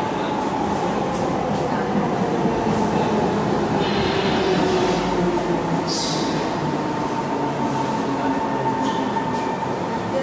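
Singapore MRT metro train pulling into an underground station behind the platform screen doors: a steady rumble with a thin high whine, and a brief hiss about four to six seconds in.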